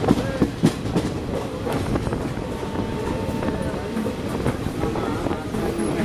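Wheels of a moving express train's passenger coach clattering over rail joints and station points, heard at the open coach door, with several sharp clacks in the first second.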